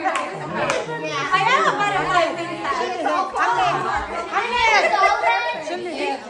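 Only speech: several women talking excitedly over one another.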